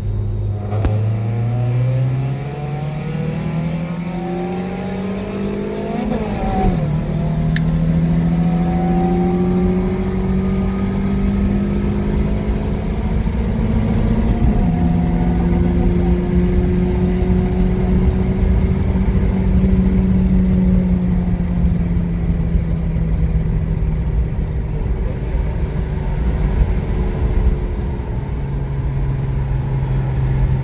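A car engine accelerating hard through the gears, heard from inside the cabin over road and wind noise. The revs climb for about six seconds, fall at a gear change, climb again, fall at a second change about fourteen seconds in, then hold and slowly ease off before dropping sharply near the end.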